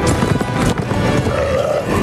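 Film battle soundtrack: music over galloping horses and growling, roaring beasts.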